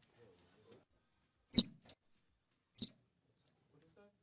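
Two sharp chirps from the sound system, about a second apart, each a short loud pop. This is the chirp the rig makes when switching from one line or preset to another, a fault in the signal chain during soundcheck.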